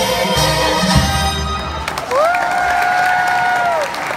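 A live stage song's music ends about halfway through, and then one long held note follows, swooping up at its start and falling away at the end, over crowd cheering and applause.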